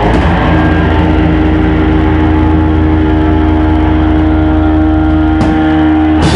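Distorted electric guitar and bass holding a loud sustained drone, with one clear note ringing steadily over it and no drumbeat; a brief gap in the sound about five and a half seconds in.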